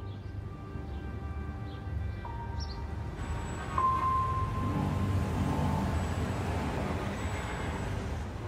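Background music score with long held tones, joined from about three seconds in by a rising wash of street traffic noise with a low rumble of passing vehicles.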